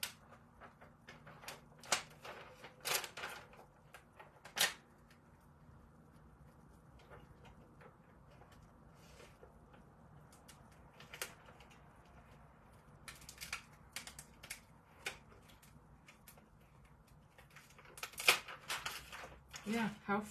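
Paper backing sheet of a heat transfer crackling and rustling in a few short bursts as it is peeled slowly off a painted metal tray, with quiet handling noise between the bursts.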